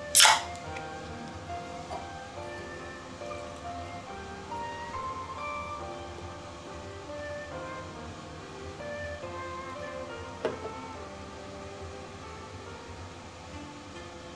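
Background music with steady melodic notes. Right at the start a beer is opened, a short sharp hiss that is the loudest sound here, and a single click comes about ten seconds in.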